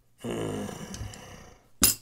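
A man's short, raspy, cough-like vocal sound that fades over about a second, then a single sharp knock near the end, the loudest sound here.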